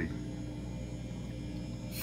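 Steady low electrical hum from running aquarium equipment, with a faint high whine above it.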